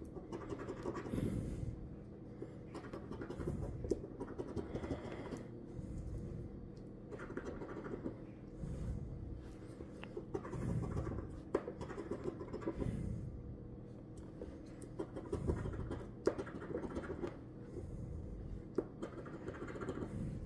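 A metal coin scraping the scratch-off coating from a paper lottery ticket in short bursts of quick strokes, with brief pauses between bursts.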